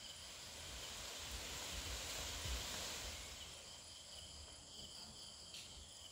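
Night chorus of crickets and other insects chirping steadily, with a broad rushing, rustling noise that swells up and fades away over the first half.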